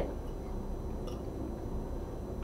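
Steady low room hum with one faint tick of cutlery about halfway through as a spoon and fork are handled over a plate of pasta salad.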